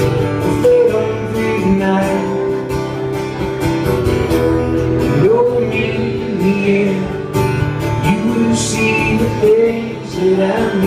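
Two acoustic guitars strummed together while a man sings, a live acoustic rock song played without a break.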